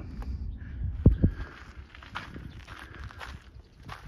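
Footsteps of a person walking outdoors, irregular and soft, with two heavier thuds about a second in.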